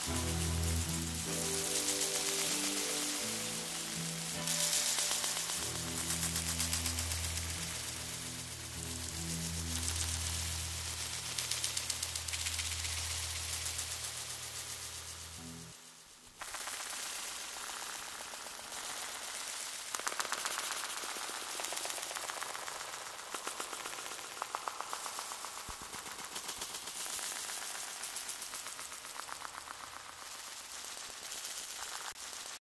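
Dub techno track: deep, sustained bass chords under a dense, crackling, hissing texture. About sixteen seconds in the bass drops out after a brief dip, leaving the rapid crackle and faint chords on their own.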